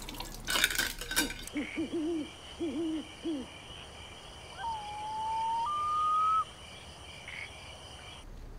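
Dishes and cutlery clattering for the first second and a half, then night ambience: a steady high insect chorus, an owl hooting a quick run of low hoots, and a long clear two-note call, the second note higher, that swells and cuts off suddenly.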